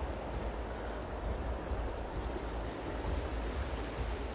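Steady rushing of a waterfall and stream swollen with snowmelt, with a deep rumble underneath.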